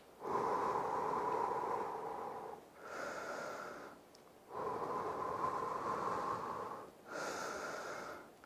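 A man breathing slowly and deeply, audibly in and out, two full breaths: each a long breath of about two and a half seconds followed by a shorter one of about a second. It is deliberate recovery breathing between exercise sets.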